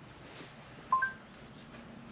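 Android Auto's voice assistant sounding a short two-note beep about a second in, the second note higher, acknowledging the spoken navigation request, over faint car-cabin noise.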